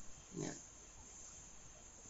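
A pause in a man's speech with only faint room tone, broken once about half a second in by a brief, faint, low vocal sound from the speaker, like a short grunt.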